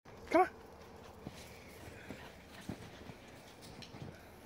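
A corgi gives a single short bark about half a second in, followed by faint soft thumps as it bounds through deep snow.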